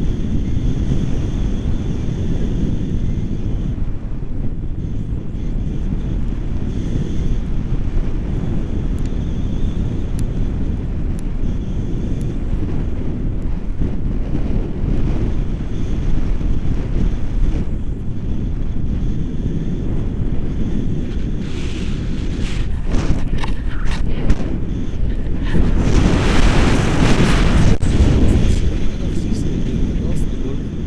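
Airflow buffeting an action camera's microphone in flight under a tandem paraglider: a steady low rumbling rush, louder for a few seconds near the end.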